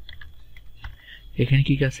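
Computer keyboard typing: a few separate, faint keystrokes, with a man's voice starting up about a second and a half in.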